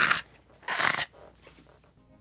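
A man laughing loudly in two short, breathy bursts in quick succession.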